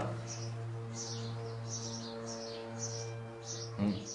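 Small birds chirping, short falling high chirps about twice a second, over a steady low electrical-sounding hum.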